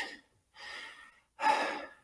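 A person's heavy breathing: two audible breaths, the second louder, acting out exhaustion.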